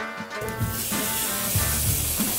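Liquid hitting a hot pan of toasted arborio rice, sizzling and hissing from about a third of the way in, with background music.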